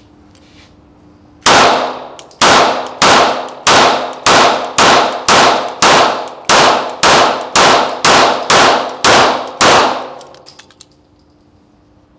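Archon Type B 9mm semi-automatic polymer pistol fired in a steady string of about fifteen shots, roughly two a second, each shot ringing off the walls of an indoor range. A longer pause comes after the first shot, then the pace stays even to the last.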